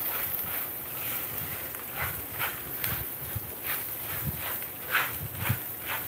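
A spatula scraping and tapping in a frying pan, with a few irregular strokes, as broken pasta with garlic and onion is stirred while it fries.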